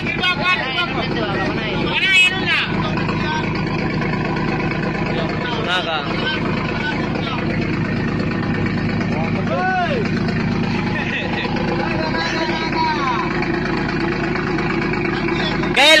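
A boat's engine running steadily, with men's voices talking over it now and then.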